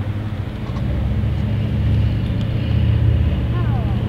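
Steady low engine-like rumble, growing a little louder about a second in, with a brief falling call near the end.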